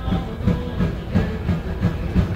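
Live medieval-style folk music played by a band, with a steady drumbeat of about three beats a second under a pitched melody line.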